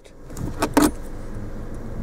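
A few sharp clicks and rattles as a car's cigarette lighter is pulled out of its dashboard socket, over steady background noise.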